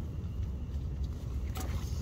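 Strong wind buffeting the tent, heard as a steady low rumble, with a faint rustle about one and a half seconds in.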